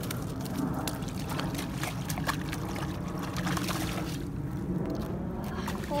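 Steady wind rumble on the microphone, with water sloshing at the edge of a pond and scattered light clicks and rustles.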